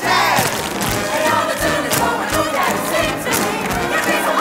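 Jazz orchestra music under many voices whooping and shouting together, with frequent sharp percussive hits.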